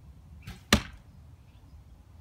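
A 45 lb Indian recurve bow's string released with a soft thump. About a quarter second later a cedar arrow hits the cardboard box target with a sharp, loud smack.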